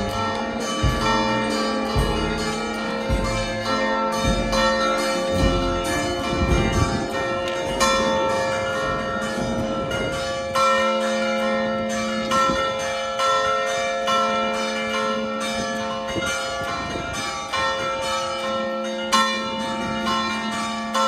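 Church bells ringing repeatedly from the belfry, fresh strikes overlapping long ringing tones. A few low thumps sound under the bells in the first few seconds.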